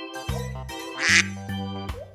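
A single duck quack about a second in, over background music with steady held notes.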